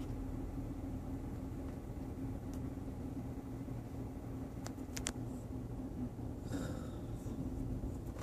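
Toyota 4Runner's 4.0-litre V6 idling, heard from inside the cabin as a steady low hum, with two faint clicks about five seconds in.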